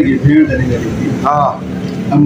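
A man's voice speaking in short phrases, reading aloud from a sheet of paper, over a steady low hum.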